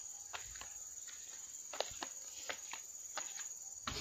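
Steady high-pitched insect drone from crickets or cicadas, with a dozen or so scattered light clicks and ticks over it.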